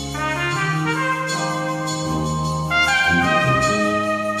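Brass band playing, with a soprano cornet solo carrying the melody in held notes over the band's sustained chords. The solo line steps up and gets louder a little under three seconds in.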